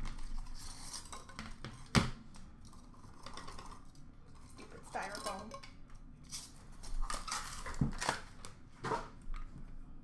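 A cardboard trading-card box and its contents handled over a glass counter: scattered taps, clicks and scrapes as the box is opened, with the sharpest knock about two seconds in.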